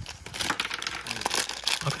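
Crinkly doll packaging being handled and unwrapped, an irregular run of crinkling and rustling.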